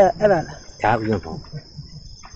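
A man's voice giving a Buddhist dharma talk, two short phrases in the first second and a half and then a pause, over a steady high-pitched background tone.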